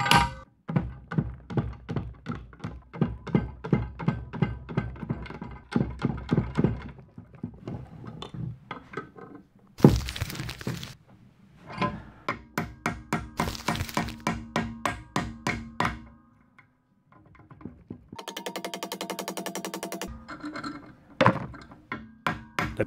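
Hammer blows on the steel quick-release chuck of a Makita HR2400 rotary hammer, with the seized SDS drill bit braced against an anvil, struck to knock the stuck bit free. The blows come as quick metallic taps, about three a second, in several runs with a short pause between them.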